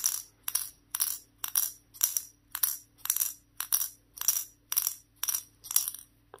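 A steel ball bearing clinking against the steel cone of a Simboll dexterity puzzle, about twice a second, as the puzzle is jolted in a steady repeated movement to bounce the ball up the cone. Each clink is sharp with a short metallic ring.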